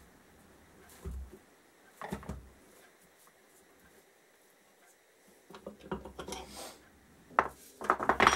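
Metal tools being handled: a bridge puller and blind bearing puller being worked in a motorcycle's rear wheel hub. A low knock comes about a second in and another around two seconds. From about five and a half seconds there is a run of metal clicks and clinks, loudest near the end.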